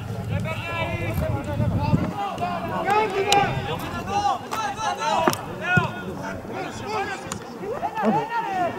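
Football players shouting and calling to each other across an outdoor pitch: overlapping, unclear yells, with a few sharp thuds in the middle.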